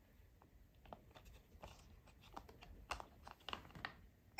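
Faint, scattered small clicks of plastic as fingers press a Blu-ray disc against the centre hub of its plastic case to release it, the clicks coming a little more often near the end.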